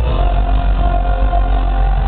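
Loud live rock band playing through a concert PA system, heavy in the bass, with a note held steadily over the mix.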